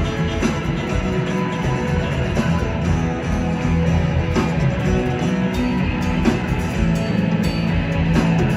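Live rock band playing at full volume: two electric guitars, an acoustic guitar, bass guitar and drums, with steady regular drum hits under sustained guitar chords.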